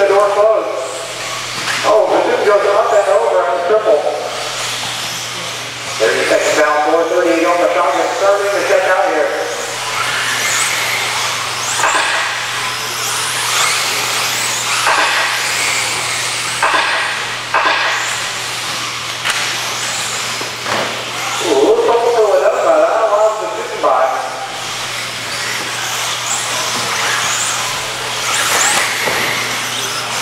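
Radio-controlled 4WD buggies running on an indoor dirt track: a dense high motor and tyre noise, with a voice speaking in several stretches over a steady low hum.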